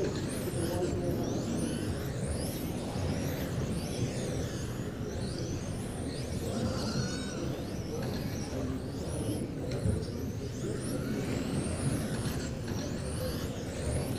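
Electric radio-controlled touring cars lapping a carpet track: the high whine of their motors rises and falls as they speed up and slow for corners, over a steady background hiss.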